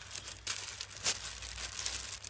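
Rustling and crinkling of silk and sequinned net lehenga fabric being handled. It grows from about half a second in, with a sharper crackle about a second in.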